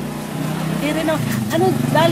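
A woman talking in Filipino.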